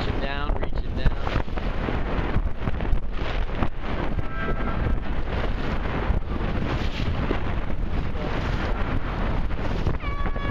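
Strong wind buffeting the microphone in a steady rush with gusts, over choppy open water. A short wavering pitched sound comes right at the start, and a brief faint tone about four and a half seconds in.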